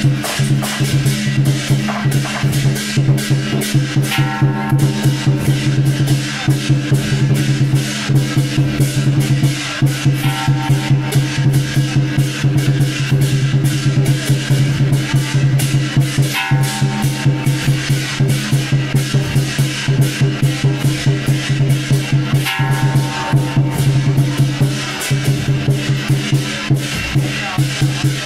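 Temple procession music: a fast, even drumbeat with percussion over a steady low drone, and a short melodic phrase that comes back every six seconds or so.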